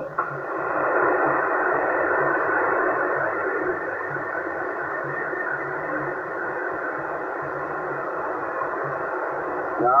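A Yaesu HF transceiver's loudspeaker giving a steady rush of 27 MHz band noise, squeezed into a narrow voice band, with a weak single-sideband station buried in it. The rush is somewhat louder for the first three or four seconds, then settles a little lower.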